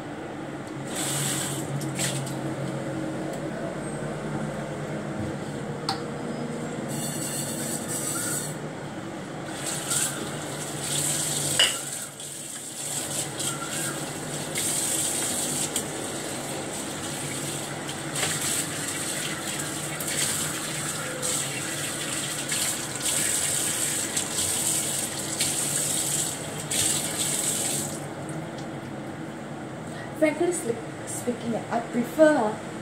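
Kitchen tap water running into a sink while a frying pan and cooking utensils are washed, the splashing changing as things are moved under the stream. A sharp clatter comes a little before twelve seconds in, and the flow dips briefly just after it.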